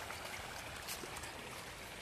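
A shoal of pangasius catfish splashing and churning at the surface of a pond as they feed: a steady watery patter of many small splashes, with one sharper splash a little before the middle.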